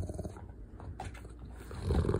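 Rottweiler's low rumbling "purr", a rapidly pulsing growl-like rumble that swells near the end. It is his contented, attention-seeking rumble, not an angry growl.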